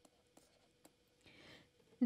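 Near silence with a few faint taps and a brief soft scratch, about a second and a half in, of a pen writing on a digital tablet.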